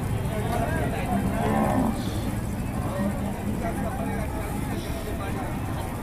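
Cattle mooing: one low, steady moo lasting about a second, heard over the crowd noise of a livestock market.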